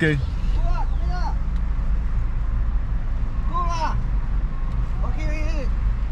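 Low, steady rumble of a car's running engine heard from inside the cabin, with a few short snatches of voices.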